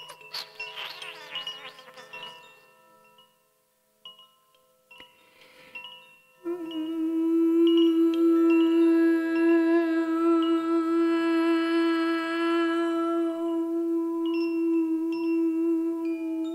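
A Koshi chime is shaken and rings in bright overlapping tones, dies away almost to silence, and rings once more. About six seconds in, a woman's voice begins a long, steady sung note in a meditative chant, held over the fading chime tones.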